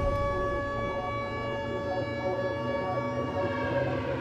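A steady, held siren-like tone with many overtones that fades out near the end.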